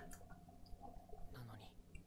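Very faint, soft whispered voice speaking a few words in Japanese, with near silence around it.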